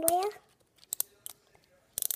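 A few brief, faint clicks and crinkles of the plastic wrapping on an L.O.L. Surprise ball as fingers pick at its second layer, about a second in.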